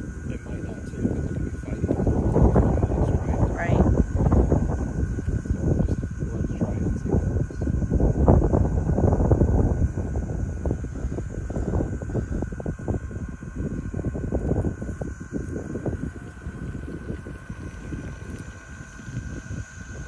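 Wind buffeting the microphone in gusts, heaviest in the first half and easing later, over a faint steady high whine.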